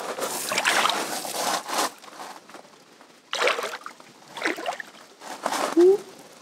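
Lake water lapping and sloshing against the rocks at the shoreline in irregular bursts.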